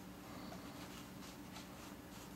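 Faint rustling and light ticks of nylon paracord being handled and pulled through a snake knot, over a steady low hum.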